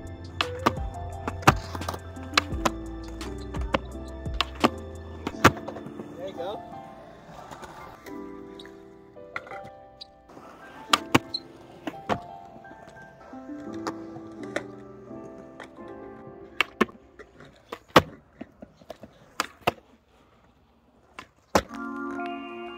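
Background music, with the sharp clacks of a skateboard on concrete scattered through it: tail snaps and wheels landing as the board is ridden onto and off a ledge. The music drops out briefly near the end.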